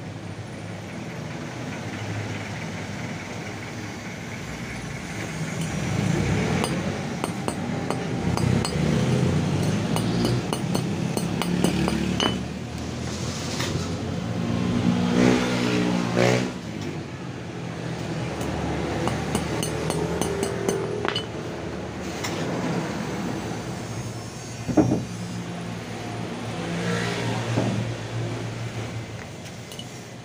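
Motor vehicle engines running and passing, swelling about a quarter of the way in and loudest around the middle, over a steady low hum. A single sharp metallic knock near the end.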